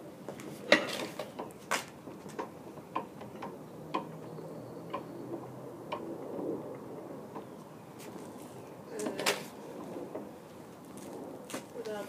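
Irregular clicks and knocks from the suspended, precessing gyro-wheel rig, the loudest under a second in. A voice is heard briefly about nine seconds in.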